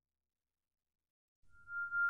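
Dead silence, then background music fading in about a second and a half in, opening on a single steady high note.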